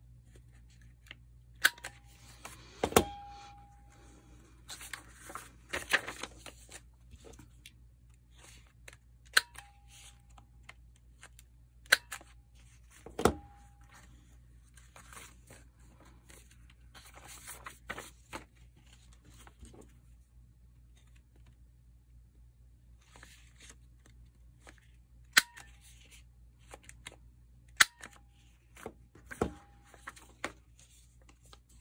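Handheld corner-rounder punch snapping through paper and card stock, rounding a notebook's corners: about eight sharp snaps a few seconds apart, some with a brief ring. Between the snaps, paper sheets rustle as they are handled.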